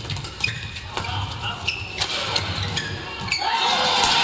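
A string of sharp, irregular taps and thuds from a badminton rally on an indoor court: racket strikes on the shuttlecock and players' shoes on the court floor.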